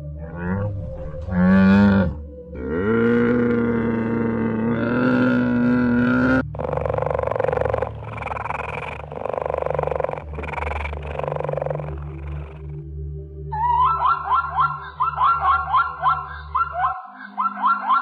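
A run of animal calls from different animals: a dromedary camel's deep groaning calls, then a series of rasping, breathy cheetah calls, then a quick run of high, yelping zebra barks near the end. A steady low hum runs under the calls and drops out shortly before the end.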